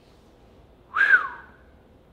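A single short whistle about a second in, lasting about half a second, rising and then falling in pitch.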